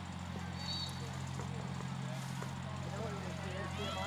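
Faint, distant voices and calls from players on the field, over a steady low hum.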